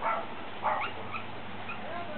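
Shorkie puppies (Shih Tzu–Yorkshire terrier crosses) yipping as they chase, with a louder yap right at the start and another just under a second in, then a few short, high yips.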